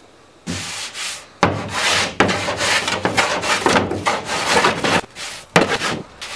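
A small hand block plane is shaving cedar strips on a canoe hull. It makes a run of short scraping strokes, roughly eight of them, starting about half a second in.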